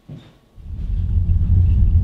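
Low, steady rumble of a car on the move, heard from inside the cabin, fading in about half a second in.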